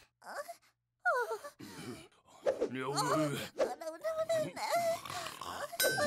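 Wordless vocal sounds from animated cartoon characters, sliding up and down in pitch. They are broken by a brief silence just before one second in.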